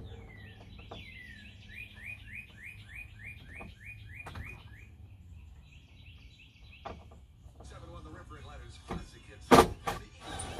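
A songbird singing a quick series of about a dozen descending chirps over the first five seconds, over a low steady background hum. Near the end come some rustling and one sharp, loud knock.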